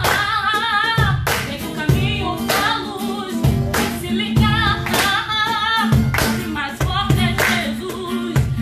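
Live acoustic music: singing over acoustic guitar and a cajón beat, with handclaps.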